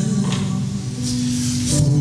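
Hymn music with a long held chord, moving to a new chord near the end.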